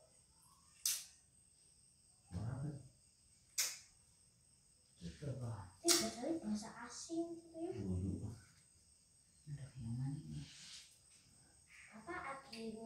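Playing cards slapped down onto a floor mat: a few sharp snaps, about a second in, at three and a half seconds and at six seconds, amid quiet voices of the players.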